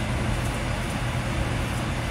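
Pot of broccoli and other vegetables at a semi-boil on an electric stovetop: a steady rush with a low hum underneath.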